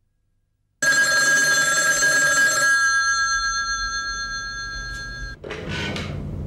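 A telephone ringing: one long ring of several steady high tones that starts abruptly about a second in, fades slowly and cuts off shortly before the end. A short rustle follows near the end.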